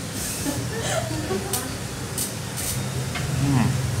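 Small-restaurant ambience: other diners talking in the background under a steady low hum, with a few short, light clinks of tableware.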